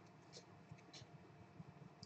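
Near silence: room tone, with two very faint short ticks.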